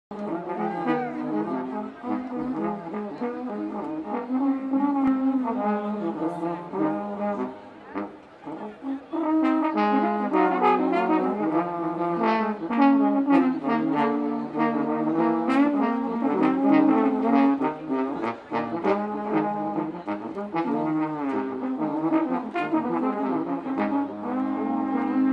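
Three trombones playing a melody together in a live brass-band performance, backed by electric guitar, bass and drums. The band drops quieter for a moment about eight seconds in, then comes back in full.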